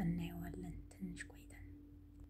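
A person's voice speaking softly and briefly, near a whisper, over a steady low hum.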